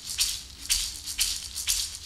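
Music track's shaker percussion playing alone between sung lines, a soft rhythmic shake about twice a second.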